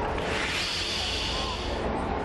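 Spectators applauding, swelling about a quarter second in and dying away near the end.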